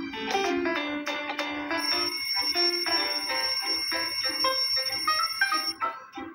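Background music with a ringing alarm-clock sound effect laid over it. The high, steady ring starts about two seconds in and cuts off suddenly just before the end, as the clock is switched off. It is heard through a TV speaker.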